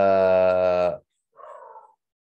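A person's voice holding one steady, drawn-out vowel for about a second, then a brief fainter breathy sound.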